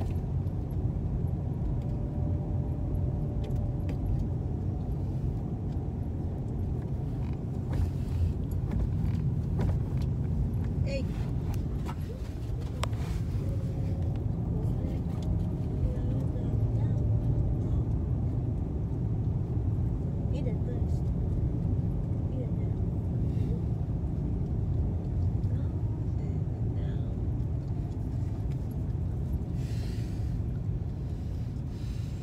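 A car driving along a street, heard from inside the cabin: a steady low rumble of engine and road noise.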